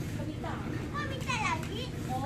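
Young children's high-pitched voices chattering and calling out over one another, loudest a little past the middle.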